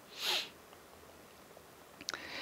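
A man's single brief sniff, a short in-breath through the nose, near the start.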